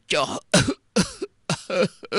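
Speech: a narrator's voice talking in quick syllables, with no other sound standing out.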